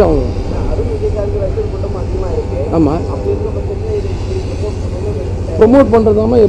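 A man's voice held in a long, wavering hesitation sound, with a brief word or two about halfway through, over a steady low rumble.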